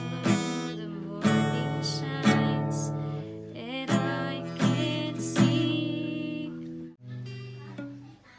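Acoustic guitar strummed in chords about once a second, with a woman singing along. Near the end the sound drops out abruptly, then the guitar carries on more quietly.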